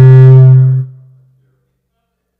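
A single loud, low musical note held steady, then released under a second in and fading out briefly.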